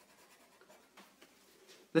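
Faint scratching of a black felt-tip marker on paper as it colours in a small area, in a few short strokes.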